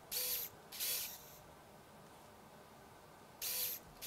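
Motors of an Open Bionics Hero bionic hand whirring in three short bursts as the fingers move: two close together near the start and one near the end.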